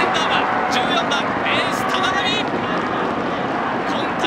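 Spectators cheering after a goal: a steady din of many voices with high shouts rising above it throughout.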